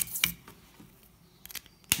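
A few sharp clicks and taps from a felt-tip marker being handled as it is lifted off the paper and changed for another colour, with a quiet pause in between and a louder sharp click near the end.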